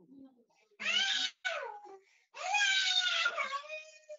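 A baby's high-pitched wailing cries heard over a video call: a short cry about a second in, a falling one right after it, and a longer drawn-out cry in the second half.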